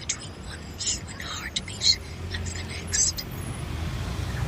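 Steady low traffic rumble with faint, indistinct talk whose sharp hissing 's' sounds stand out above it.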